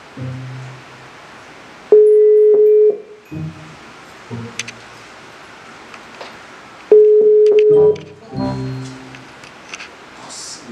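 Mobile phone ringback tone through the phone's speaker: two long single-pitch beeps, each about a second long and about five seconds apart. This is the Brazilian ringing-tone pattern, the call ringing and not yet answered.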